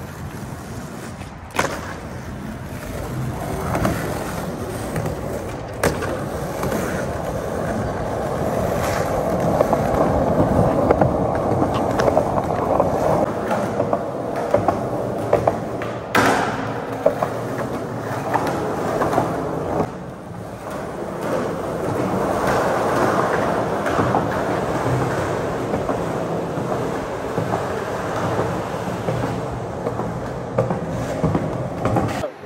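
Skateboard wheels rolling over a concrete parking-garage deck, a continuous rough rolling noise that swells and fades. A few sharp clacks of the board are heard, the clearest about halfway through as the skater pops a jump trick.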